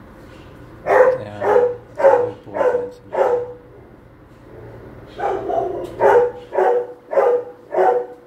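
A dog barking in two runs of about five short barks each, roughly two barks a second, with a pause of about two seconds between the runs.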